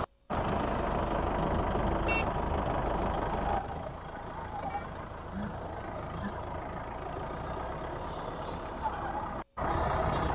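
Engine of an open-top 4x4 jeep running as it drives over uneven, sloping grass, a steady rumble that is louder for the first few seconds and then eases. The sound cuts out for a moment near the end.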